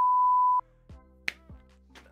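Test-tone beep played over colour bars: one loud, steady, mid-pitched tone that lasts just over half a second and cuts off sharply. After it come faint low sustained tones and a few short ticks.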